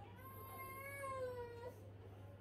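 A newborn baby's single drawn-out cry, rising slightly and then falling, lasting about a second and a half.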